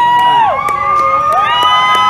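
Excited high-pitched screams of joy from two overlapping voices. Each is held on one long steady note for over a second, with a few sharp clicks among them: people shrieking in celebration as a marriage proposal is accepted.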